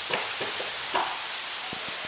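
Steady hiss of rain on the cellular polycarbonate roof and walls heard from inside, with a few faint ticks.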